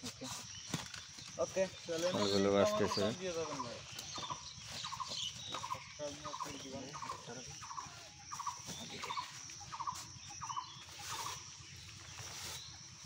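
A bird or fowl calling, the same short note repeated evenly about one and a half times a second, starting a few seconds in and running on to near the end.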